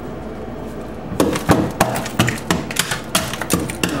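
Irregular sharp knocks, several a second, starting about a second in: a dead blow hammer striking ice on the floor of a refrigerator's freezer compartment to break it up.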